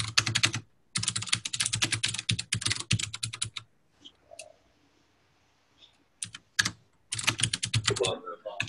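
Fast typing on a computer keyboard, heard through a video-call microphone, in quick runs of key clicks with a pause of about two and a half seconds in the middle.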